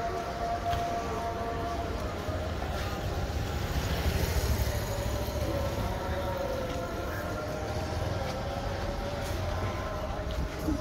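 City street ambience: a steady low rumble of traffic and engines, with faint held hums drifting over it.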